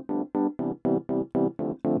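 Logic Pro Vintage Electric Piano software instrument playing a repeated chord pattern, about four evenly spaced chord strikes a second, fed through a tape delay on a send bus.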